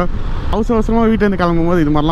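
A man talking, over the steady low noise of wind and the motorcycle running as it rides.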